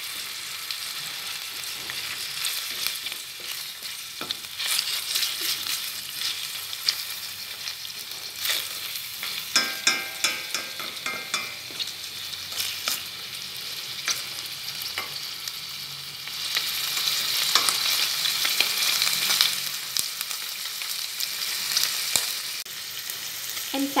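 Minced pork sizzling in hot oil in a stainless steel pan while it is stir-fried to firm the meat. Wooden chopsticks clack and scrape against the metal pan, and the sizzle swells louder for a few seconds about two-thirds of the way through.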